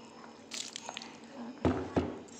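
Liquid poured into a steel bowl of fish roe, flour and chopped onion, with a short splash and a loud sudden knock-like sound near the end.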